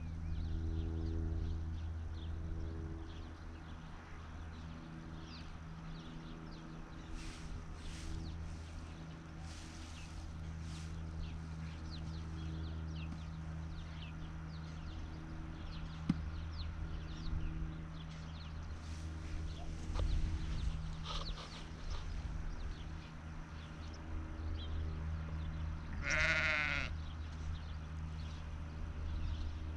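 A sheep bleats once near the end, a single wavering call about a second long, over a steady low hum.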